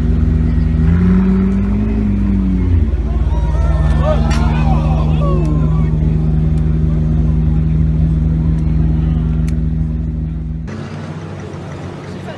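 McLaren P1 GTR's twin-turbo V8 running. Its pitch swells in a brief rise of revs about a second in, falls back by about three seconds, then idles steadily until the sound drops off abruptly near the end.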